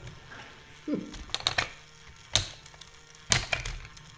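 Sharp plastic clicks and clacks from a Loopin' Chewie tabletop game: the players' flipper levers and the swinging arm's little Millennium Falcon knocking against the plastic. A quick cluster of clicks comes about a second and a half in, one about halfway through, and another cluster near the end, with a brief falling voice sound about a second in.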